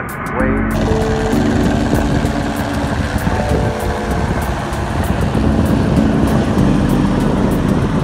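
Police helicopter overhead: a steady engine drone with a faint, regular rotor beat, over a continuous rumble of wind and surf.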